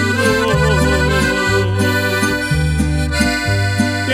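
Piano accordion playing the melody of an instrumental break between verses, over acoustic guitar accompaniment with a bass line that steps from note to note.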